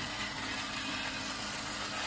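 Soviet 'Sputnik' clockwork shaver, made by the Chelyabinsk watch factory, running on its wound spring with a steady, even hum while pressed against the beard and shaving.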